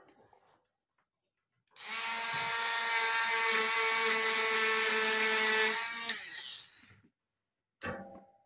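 Hand-held mini rotary tool with a small brush wheel, run against a pinball coil's solder lug and magnet-wire end: a steady motor whine for about four seconds, then winding down with falling pitch as it is switched off.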